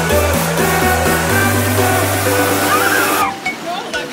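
Background pop music with a steady, sustained bass line that cuts off about three seconds in, leaving a quieter stretch.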